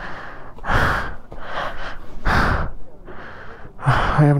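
A person breathing hard and fast close to the microphone, four rushing breaths about three-quarters of a second apart: laboured breathing in the thin air at about 17,800 ft.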